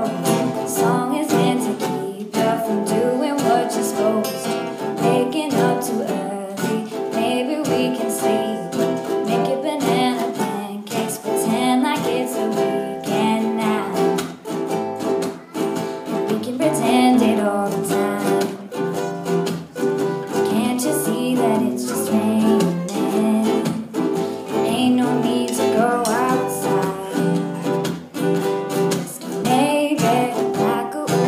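Live acoustic song: strummed plucked-string instruments in a steady rhythm with singing over them.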